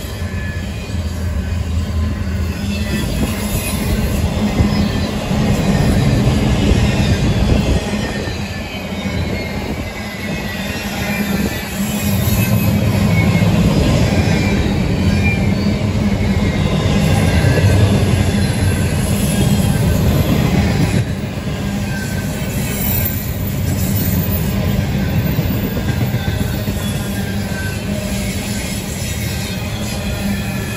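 Double-stack container well cars of a freight train rolling past: a steady rumble of steel wheels on rail that swells and eases, with thin high-pitched tones that slowly fall in pitch.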